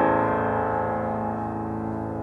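A big chord on a 1960 Steinway Model B grand piano ringing on after the hands leave the keys, its many notes fading slowly and evenly.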